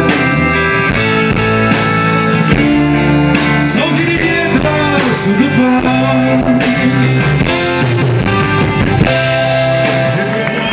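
Live rock band playing an instrumental passage between sung lines, led by electric guitar over bass and drums.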